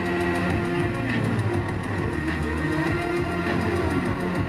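Live electronic music played loud over a concert PA, with a steady beat.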